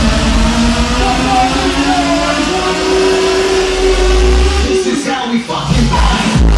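Loud EDM club mix over a sound system: a long held synth or vocal note steps up in pitch about halfway through over heavy bass, then the bass cuts out briefly near the end in a break before the beat returns.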